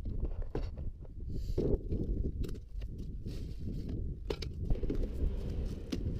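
Plastic storage box and bottle being handled: scattered short clicks and scrapes over a steady low rumble.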